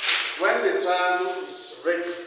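A man's voice talking, opening with a sudden sharp hiss-like burst.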